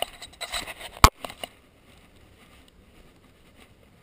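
Handling noise from a head-strap camera being fitted on the head: rustling and clicks, with one sharp knock about a second in, then only faint room tone.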